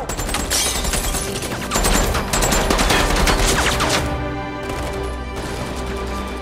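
Rapid automatic gunfire, a dense volley of many shots in quick succession for about four seconds, loudest in the middle. The shooting stops and background music with held notes carries on.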